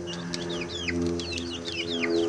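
Young sex-link chicks peeping: many short, high, falling chirps in quick succession, over a low steady hum.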